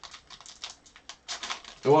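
Foil baseball card pack wrapper crinkling and crackling as it is peeled open by hand, a quick irregular run of crisp crackles. A voice comes in near the end.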